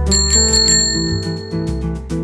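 A small bell, struck in a quick run of dings and then ringing out for over a second, over background guitar music.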